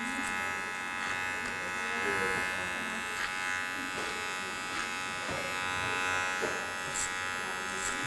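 Electric hair clipper running with a steady buzzing hum while it cuts clipper-over-comb, the blade passing over hair held up by a black comb.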